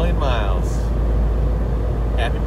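Steady low drone of road and engine noise inside the cab of a T1N Sprinter van cruising at about 80 mph, its five-cylinder diesel turning about 3,000 rpm.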